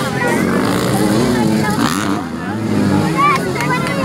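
Spectators talking, with dirt bike engines running in the background.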